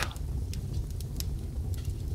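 Wood fire crackling: a handful of irregular sharp pops and snaps over a low steady rumble of burning.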